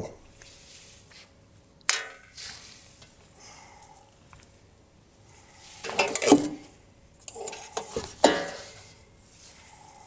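A flat cut-out sheet being lifted off a wall hook and rehung from another hole: a sharp knock about two seconds in, then two bouts of clattering and scraping of the sheet against the hook and board, near the middle and shortly after.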